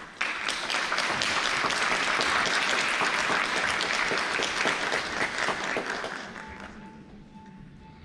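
Concert-hall audience applauding: many hands clapping, starting abruptly right after the music stops, holding steady, then dying away over about a second near the end.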